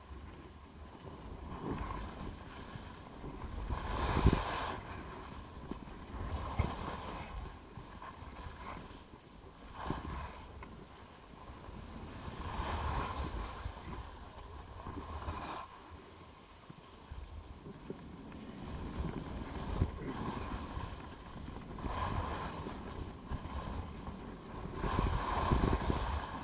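Skis carving and scraping on a groomed piste, the hiss swelling with each turn every two to three seconds, over a low rumble of wind on the microphone.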